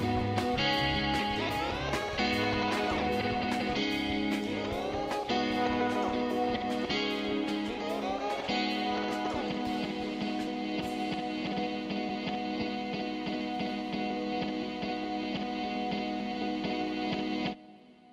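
Instrumental guitar track: picked guitar notes over low bass notes, then a final chord left ringing that slowly fades and is cut off just before the end.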